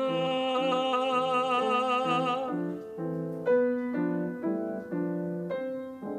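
A tenor holds one long high note with vibrato over piano accompaniment, the note ending about two and a half seconds in. The piano then carries on alone with a sequence of chords.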